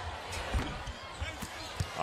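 Basketball being dribbled on a hardwood court, a few separate thumps over the arena's background noise.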